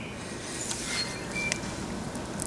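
Quiet outdoor background noise, an even low hiss, with a faint brief high chirp about a second and a half in.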